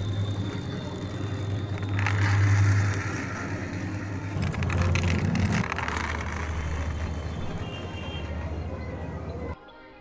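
A small die-cast toy car rolling across rough concrete after a push: a rolling, rattling noise that swells twice, about two and five seconds in, over a steady low hum. The sound cuts off suddenly just before the end.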